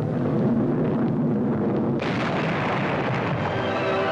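Newsreel sound effect of a Bristol Bloodhound missile strike: a steady rushing rumble that turns sharper and louder about halfway through. Orchestral music swells in near the end.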